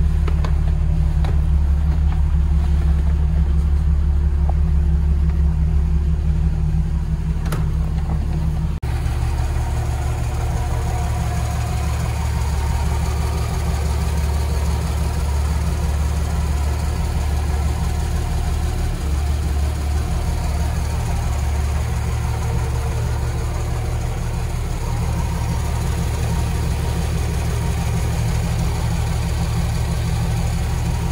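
1963 Mercury Comet's inline-six engine idling steadily. It is heard first from the driver's seat, where the low hum is strongest. After a short break about nine seconds in, it is heard close up at the open engine bay, with more of the engine's mid-range sound.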